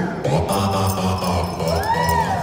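A group of voices singing or chanting together, holding a long steady note; near the end a voice slides up and then down in pitch.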